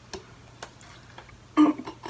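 A quiet pause with a low steady hum and a few soft, scattered clicks, then a woman's voice breaks in briefly near the end.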